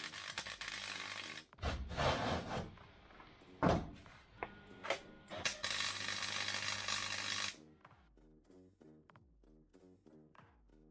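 MIG welder arc crackling and hissing in separate runs as a steel plate is welded in, the longest run about halfway through, with a low hum under it. Soft background music with a steady beat comes in near the end.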